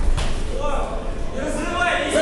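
Indistinct voices calling out across a large hall, with a single dull thud right at the start.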